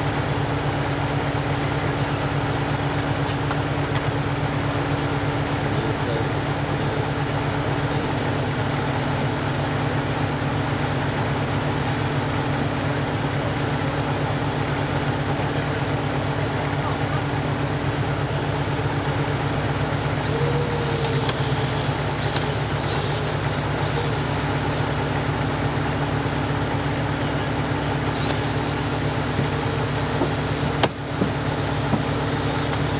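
An engine running steadily at idle, a constant low drone, with faint voices and a few short high squeaks in the last few seconds.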